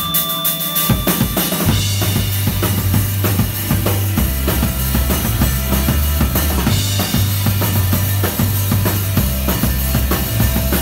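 A rock band playing live: the drum kit keeps a steady beat, and low electric bass notes join it under the drums a second or two in, with electric guitar.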